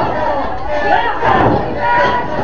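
A small crowd of wrestling spectators shouting and yelling over one another.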